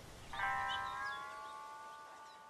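A bell-like ringing chord of several steady tones, entering about a third of a second in and slowly fading away.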